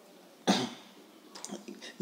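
A single short cough from the narrating teacher about half a second in, followed by a few faint clicks.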